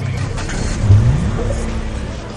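A vehicle's motor accelerating: a low running sound whose pitch rises about a second in, then holds steady.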